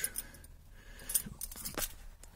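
A car key on its fob clinking in the hand: a few light, scattered clicks and jingles.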